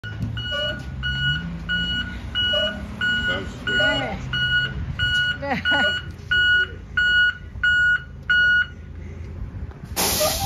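School bus backup alarm beeping about one and a half times a second while the bus reverses, with its diesel engine running underneath. The beeping stops near the end as the bus halts.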